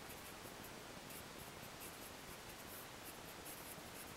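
Felt-tip marker writing on paper: faint, irregular short strokes of the tip scratching across the sheet, mostly from about a second in.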